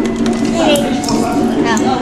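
Indistinct voices and chatter in a busy shop.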